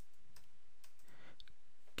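Faint, scattered clicks of computer keyboard keys being typed, over a steady low hiss.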